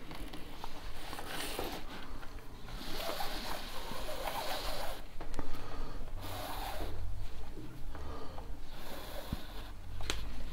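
Paracord being drawn through a woven knot, the cord rubbing and swishing against the weave in several pulls of about a second each, with a few small ticks in between.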